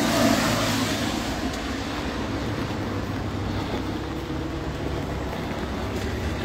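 Road traffic on a wet street: a steady wash of vehicle noise that swells at the start and then eases slightly, with a low engine hum underneath.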